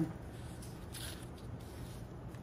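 Faint rustle of a sheet of calligraphy practice paper being slid and smoothed by hand over a felt mat, strongest about a second in.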